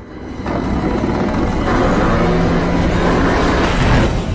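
Film soundtrack of a loud rushing, churning water noise that builds up over the first half second and then holds steady. A low steady tone sounds under it through the second half.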